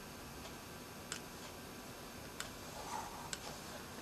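A few faint, sharp clicks of a computer mouse button, about a second apart, over a steady low hiss.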